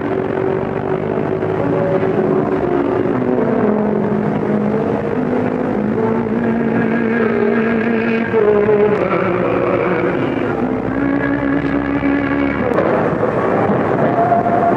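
Crowded city street noise, with a run of held tones that change pitch every second or two.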